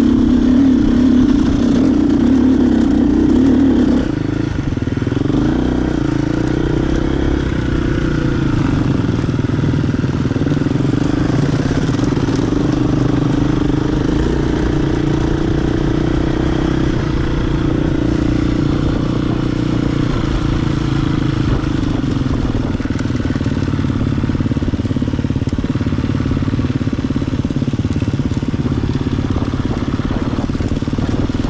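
GasGas enduro motorcycle engine running steadily while riding a dirt trail, recorded close to the bike. The level drops and the engine note shifts about four seconds in.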